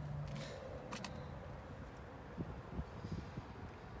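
Quiet handling and movement noise as a person climbs out of a car's back seat, with two light clicks in the first second and soft low thumps through the second half.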